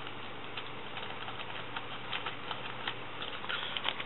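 Light handling noises from fly-tying materials, a hackle saddle being picked through and set down: scattered faint ticks and rustles, a little busier near the end, over a steady low hiss and hum.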